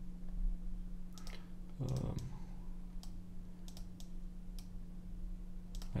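Computer mouse clicking: a handful of sharp, scattered clicks as nodes are selected and dragged on screen, over a steady low hum.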